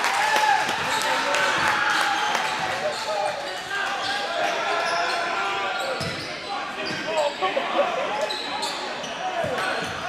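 Basketball game in play in a gymnasium: the ball bouncing on the hardwood floor, short squeaks of sneakers, and indistinct voices of players and spectators.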